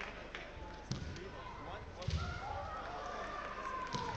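Kendo fencers giving long drawn-out kiai shouts, with sharp knocks of bamboo shinai about one second in and near the end, and heavy stamps of bare feet on the wooden floor around two seconds in.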